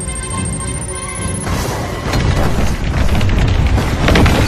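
Action-film soundtrack: music holds a sustained chord under a thin high whistle that rises slightly. From about a second and a half in, a dense, loud mix of low rumble and booming impacts comes in under the music.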